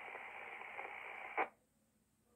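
Ham radio transceiver's speaker carrying a steady hiss of an open carrier with nobody talking. About one and a half seconds in, a short burst of noise cuts off abruptly: the transmission has dropped and the squelch has closed, leaving near silence.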